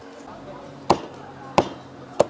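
Cleaver chopping through a roasted duck onto a thick wooden chopping block: two sharp chops, about a second in and again near the end.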